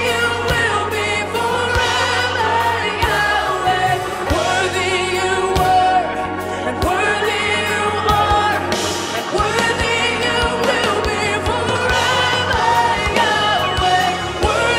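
Live gospel-style worship song: a lead woman's voice with a group of backing singers singing together over a band, the held notes wavering with vibrato.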